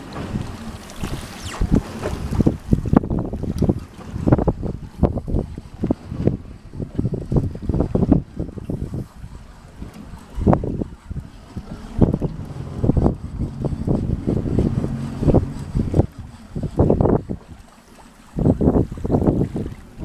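Wind buffeting the microphone in irregular gusts, over the low wash of water around a small boat on open sea.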